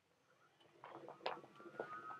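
Airway-clearance vest machine (high-frequency chest wall oscillation unit) being switched on: a few faint clicks and handling rustles, then its air generator starts with a faint steady high whine as it begins filling the vest with air. Not very loud.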